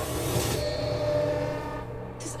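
Trailer soundtrack: a held, horn-like drone over a low rumble, fading away near the end.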